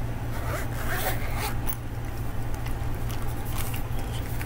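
Zipper of a black zippered hard-shell lens carrying case being pulled open: a few quick zipping strokes in the first second and a half, then shorter scratchy strokes near the end.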